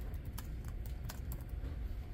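Typing on a computer keyboard: irregular key clicks, several a second, over a low steady room rumble.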